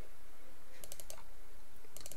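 A few faint computer mouse clicks in a quick cluster about a second in, over a steady low background hum.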